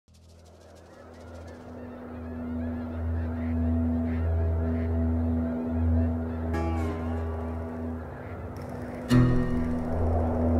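A flock of geese honking over a low, sustained music drone that fades in from silence, with a sudden loud hit about nine seconds in.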